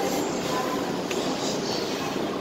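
Steady mechanical rumble and hiss of railway station noise, even throughout with faint thin tones above it.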